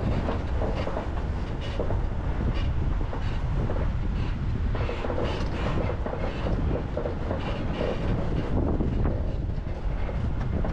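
Road noise from a moving vehicle: a steady low rumble with irregular rattles and knocks as it drives over a rough road.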